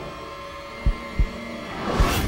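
Dramatic heartbeat sound effect in a suspense score: one double thump about a second in, over a faint held drone, with a rising swoosh building near the end.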